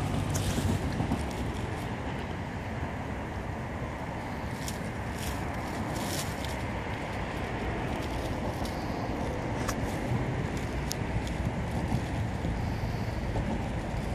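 Steady rumble of passing street traffic, with a few faint short clicks about five and ten seconds in.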